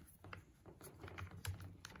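Faint clicks and taps from hands working the blade-release clamp of a reciprocating saw, several small separate clicks a fraction of a second apart.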